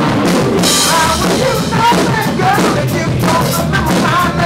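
A live rock band playing loudly: electric guitars over a drum kit, with a cymbal crash ringing out about half a second in.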